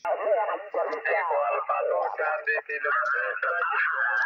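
Single-sideband voice signal from a Yaesu FT-817 transceiver's speaker: a station calling in, thin and narrow-band.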